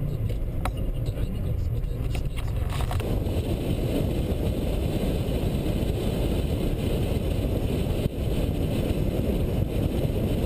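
Steady road and engine noise inside a moving car. A few light clicks come in the first seconds, and about three seconds in the noise grows louder and brighter.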